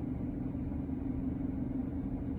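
Car engine idling, heard inside the parked car's cabin as a steady low hum with rumble.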